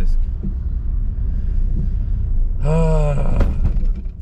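Steady low rumble of a small car's engine and road noise heard from inside the cabin while driving, with a brief vocal sound from the driver about two and a half seconds in.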